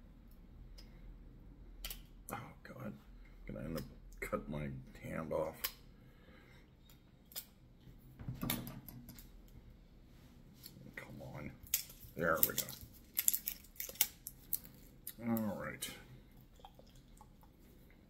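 A knife cutting and plastic shrink-wrap being picked and peeled off a hot sauce bottle's cap. Scattered sharp clicks and crackles, with a dense run of them about two-thirds of the way through.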